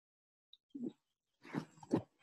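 Near silence, then a few faint, short vocal sounds from a man, murmurs or breaths, about a second in and near the end.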